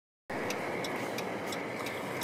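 Steady road and engine noise inside a moving vehicle's cabin, starting just after the opening moment, with faint ticks about three times a second.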